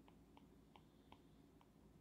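Near silence with a few faint, irregular light ticks: the plastic tip of an Apple Pencil tapping the iPad's glass screen during short shading strokes.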